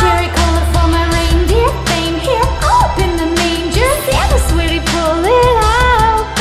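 A woman singing a slow pop song with gliding, drawn-out notes over deep bass and a regular drum beat.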